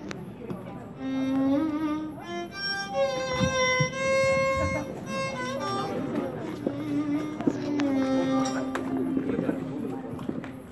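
Solo violin playing a slow melody, starting about a second in, mostly long held notes with slides between pitches.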